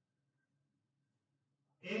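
Near silence: quiet room tone in a pause, with a man's voice starting to speak near the end.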